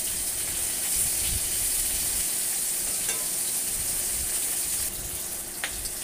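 Koi fish (climbing perch) pieces and eggplant slices sizzling steadily as they fry in hot oil in an aluminium karahi, with a couple of light taps of a metal spatula against the pan.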